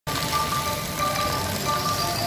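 Water jets of a decorative fountain splashing steadily onto wet paving, with music of held notes playing over it.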